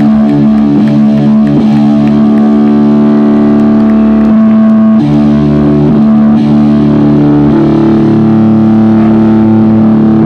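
Live rock band, heard through a phone's microphone at a very loud level: distorted electric guitar and bass guitar holding long sustained chords that shift a few times, with light drum and cymbal hits underneath.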